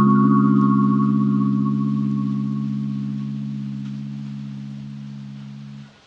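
Background music: one held synthesizer chord that fades slowly over several seconds and cuts off just before the music moves on.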